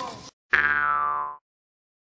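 A cartoon 'boing' sound effect starting about half a second in and lasting about a second.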